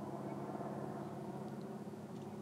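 A faint, steady low hum that holds one pitch throughout.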